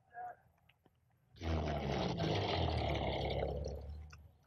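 A bus's diesel engine running, with a loud rushing hiss over it. It starts suddenly about a second and a half in and dies away near the end.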